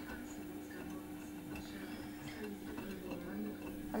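Electrolux EW1006F front-loading washing machine running mid-cycle: a steady low hum with a few faint clicks.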